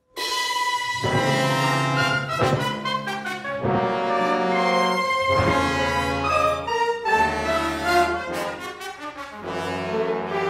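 Symphony orchestra playing loudly, with brass to the fore, starting suddenly out of silence.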